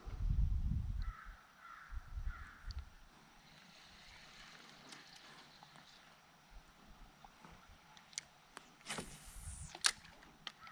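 A bird gives three short, harsh calls about a second in. Light clicks and knocks follow near the end, the loudest a sharp clatter just before the end. A low rumble fills the first second.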